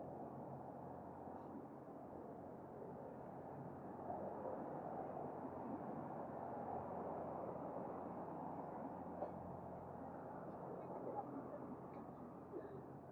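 Street ambience of a busy seaside promenade: indistinct chatter of passers-by over a low, steady hum of traffic.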